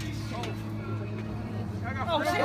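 Steady low mechanical hum, like a motor running, with faint voices over it.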